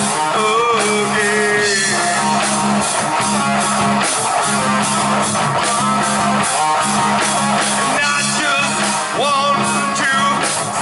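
Live rock band playing: electric guitar, bass guitar and drum kit, with sustained bass notes under a steady drum beat.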